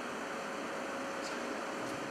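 A 90-percent-efficiency gas furnace running with its burners lit: a steady rushing hiss of the burner flames and draft-inducer fan, with a faint steady whine under it.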